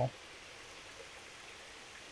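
Faint steady hiss of running water in the background, with no distinct events.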